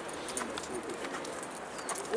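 A bird calling over steady outdoor background noise.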